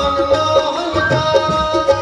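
Live Braj Holi folk music: a harmonium plays a melody of held notes over a steady hand-drum rhythm.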